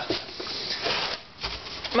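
Scuffing and rustling handling noise from someone moving about while carrying a camera on a concrete garage floor, with a short low thump about one and a half seconds in.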